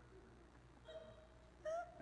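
Quiet pause in a large hall, with a faint short high-pitched voice sound from someone in the audience near the end.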